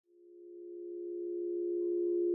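A steady pure-sounding musical drone fades in from silence and swells, with a faint higher tone joining near the end.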